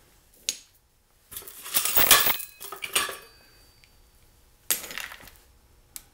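Metal trailer hitch balls dropped into a plastic bucket of gravel, clanking against each other and the gravel. A short clank comes about half a second in, a louder run of clanks follows around two seconds, and another comes near the end.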